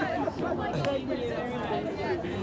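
Several people talking at once, an indistinct babble of overlapping conversation with no single voice standing out.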